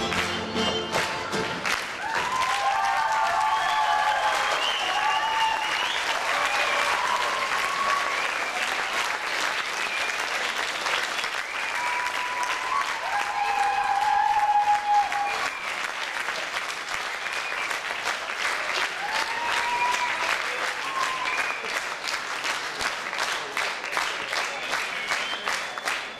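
Folk band music stops about two seconds in, and an audience claps steadily, with a few voices calling out over the applause.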